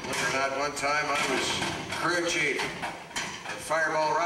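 Voices making drawn-out wordless vocal sounds, with some clattering mixed in.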